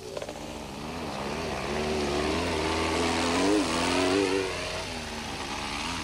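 Off-road race car's engine revving as the car drives over rough grassland, its pitch rising and falling. It grows louder up to about four seconds in, then eases off.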